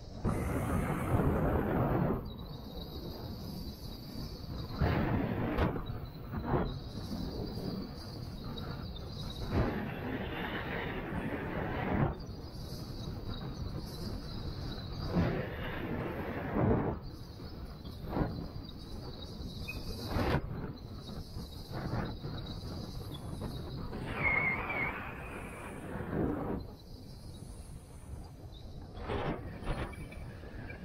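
Skis scraping and carving across groomed snow through a series of turns: a hissing rush that swells for a second or two every few seconds over a steady background rush.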